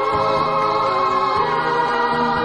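North Korean electronic-ensemble song: a pangchang chorus of voices sings held notes over electronic keyboards and a steady bass line.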